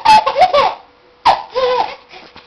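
Baby laughing in two high-pitched bursts, the second starting a little past halfway.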